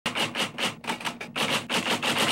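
Typewriter keys clacking in a quick, even run of about six strikes a second, used as a sound effect.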